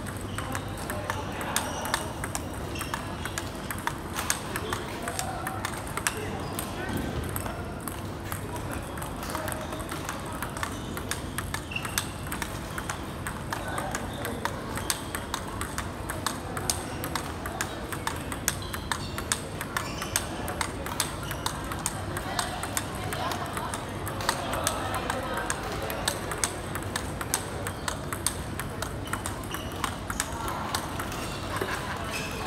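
Table tennis drill rally: a celluloid-type ball clicking sharply off rubber-faced paddles and the table top in a steady run, two or three clicks a second.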